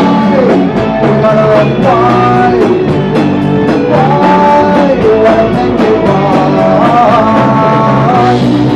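An Oi! punk band playing live in a rehearsal room: electric guitars and a drum kit with regular cymbal hits, under a sung melody that bends in pitch.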